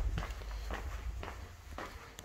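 Footsteps of a person walking across a tiled garage floor: a string of soft, short steps.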